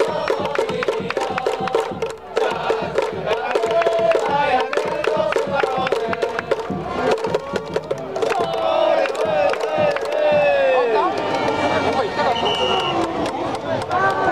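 Japanese pro baseball outfield cheering section: a large crowd of fans chanting a cheer song and clapping on a steady fast beat, backed by brass and drums, with shouts rising and falling near the middle.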